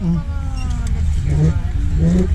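Steady low rumble of wind buffeting the handlebar camera's microphone as an electric minibike rolls slowly, with people's voices over it.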